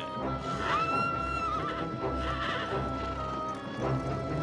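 Film score with one long high held note, over a group of ridden horses moving on dusty ground, with whinnying.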